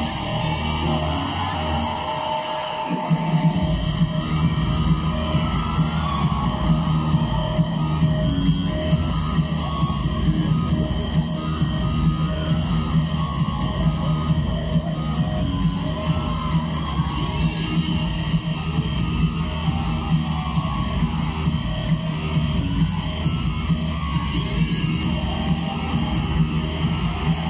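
Wrestler's entrance theme, a rock track with guitar, played loud over the arena sound system; a heavy steady beat kicks in about three seconds in.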